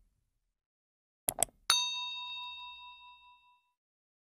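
Two quick clicks, then a bright bell-like ding that rings and fades away over about two seconds: the click-and-notification-bell sound effect of a YouTube subscribe-button animation.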